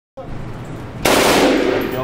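A burst of full-automatic rifle fire lasting about a second, starting about a second in, the shots running together in the reverberation of an indoor firing range.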